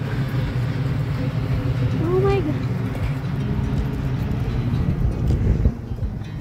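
Outdoor crowd ambience: a steady low rumble under people's voices, with one drawn-out voice call that rises then falls about two seconds in.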